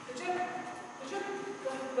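A man's voice calling to a running dog, with footfalls on the turf.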